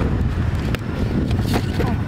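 Wind buffeting the microphone in a steady low rumble, with a few light knocks and scrapes from a cardboard box being opened.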